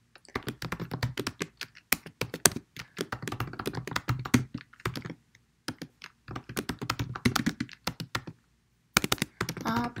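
Fast typing on a computer keyboard: runs of quick keystroke clicks, broken by a short pause about five seconds in and a longer one a little after eight seconds.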